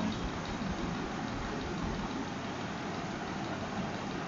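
Steady background noise, an even hiss with a low rumble underneath, unchanging throughout.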